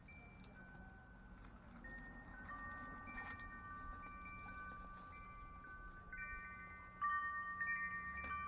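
Wind chimes ringing: several clear high notes struck at irregular moments and ringing on, overlapping one another, with a louder cluster of strikes near the end.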